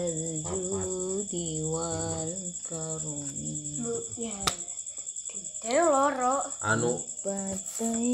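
Crickets chirping in a steady, fast, even trill throughout. A person's voice rises and falls over them at times, loudest a little past the middle.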